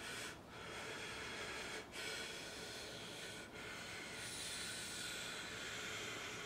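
A man breathing deeply and audibly in long, slow breaths with short pauses between them, the last breath longer than the rest. These are deliberate breaths taken to come out of a channeling trance.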